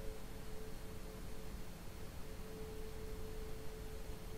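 A faint, steady pure tone held on one unchanging pitch, over a low background hiss.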